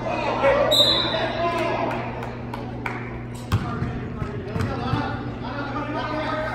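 Basketball game in an echoing gym: spectators' and players' voices, a short referee's whistle blast about a second in, then a ball bouncing on the court floor a couple of times, over a steady low hum.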